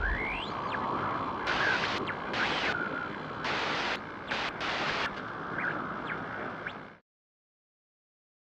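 Edited intro sound effect: a steady hiss with several bursts of harsh static and short squeaky chirps. It cuts off suddenly about seven seconds in.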